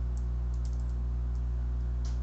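A few faint computer keyboard key clicks as menu items are stepped through, over a steady low hum.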